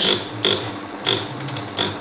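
Steady low electric hum from the running chocolate fountain and stage smoke machine, with a few short hissy puffs.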